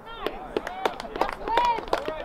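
Several voices shouting short calls across an outdoor soccer field during play, with sharp knocks scattered among them.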